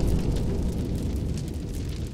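Explosion sound effect from an intro title sequence, its deep rumble fading away.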